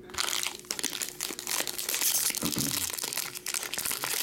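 Foil wrapper of a 2022 Topps Series 1 jumbo baseball card pack crinkling and tearing as hands pull it open, a dense run of small crackles.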